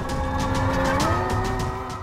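Dramatic TV-serial background music: a held synthesizer tone that slides up to a higher pitch a little over a second in, over a low pulsing beat.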